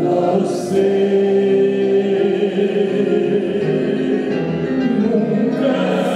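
Grand piano accompanying a slow ballad, with several voices singing along in long held notes.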